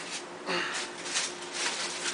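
A person sniffing and breathing hard through the nose in a few short breathy bursts, the first about half a second in and more toward the end, as if smelling the wine.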